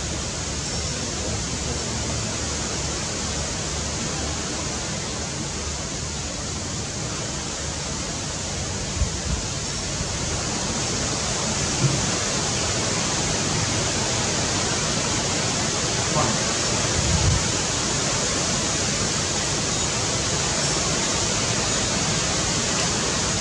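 Steady, even hiss of outdoor background noise, with a few brief soft knocks around the middle.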